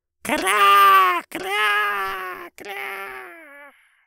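A drawn-out cry of 'Kraaa!' standing for a big bird's call, heard three times in a row, each fainter than the one before, like an echo.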